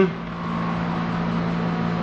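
Steady low machine hum with a fainter higher tone above it, unchanging, as of a fan or air conditioner running in the room.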